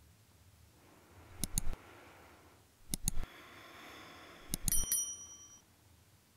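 Subscribe-button overlay sound effect: three sets of mouse clicks about a second and a half apart. The last set is followed by a short, high notification-bell ding.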